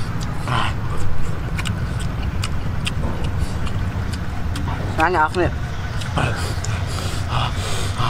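Close-up eating sounds of two people chewing bamboo shoots with chilli sauce: scattered small clicks and mouth noises over a steady low rumble, with a short wavering vocal sound from one of them about five seconds in.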